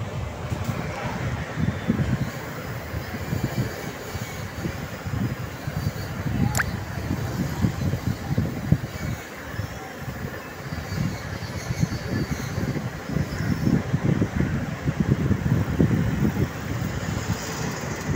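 Small moped engine running as it tows a two-wheeled cargo trailer along the road, mixed with road traffic noise and an irregular low rumble.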